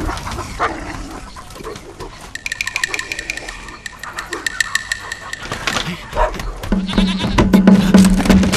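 A farm animal's long call lasting about three seconds, followed near the end by a loud, low held tone.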